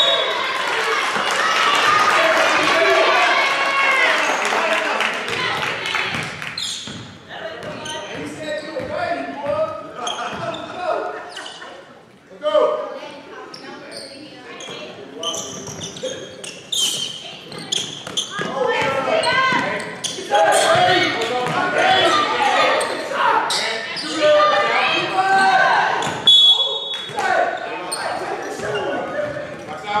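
Basketball game in a gym: a ball bouncing on the hardwood floor in short sharp knocks, with players and spectators calling out, all echoing in the large hall.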